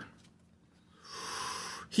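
A man's breath out, heard as a soft hiss lasting about a second, starting about halfway through.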